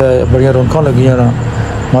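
A man speaking over the steady low rumble of a moving car.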